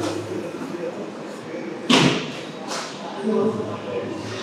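A sharp loud bang about two seconds in, with a weaker bang just under a second later, over a murmur of background voices in a large, echoing room.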